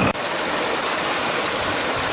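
Steady rush of water flowing through a collapsed concrete culvert.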